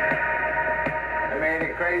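Movie trailer soundtrack: sustained, steady music tones, with dialogue from the trailer starting near the end.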